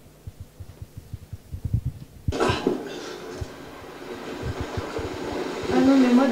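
Low, irregular thumps, then about two seconds in a film soundtrack starts playing through the room's speakers: a steady, noisy outdoor ambience.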